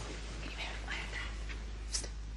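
Faint whispering, breathy and without voiced pitch, with a short sharp click near the end, over a steady low hum.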